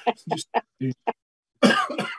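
A man laughing in short bursts, then coughing near the end.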